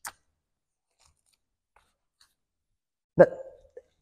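Near silence in a pause of a woman's talk, opened by one short click; she says "but" near the end.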